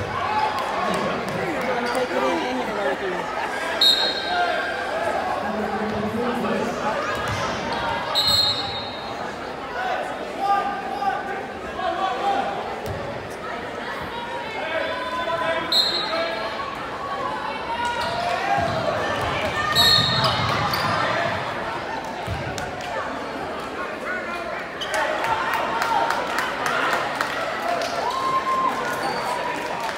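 Crowd chatter echoing through a gymnasium during a basketball game, with a basketball bouncing on the hardwood floor. Four short high-pitched chirps cut through it at intervals.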